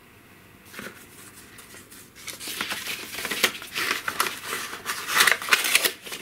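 A paper envelope being opened by hand and a greeting card drawn out, with crisp paper rustling and crinkling. The first two seconds are quiet apart from a single click, then the rustling starts and comes in louder bursts.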